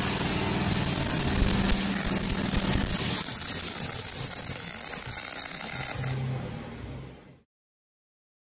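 MIG welder arc running on aluminium: a steady, even hissing crackle with a low hum under it. It fades out and stops about seven seconds in.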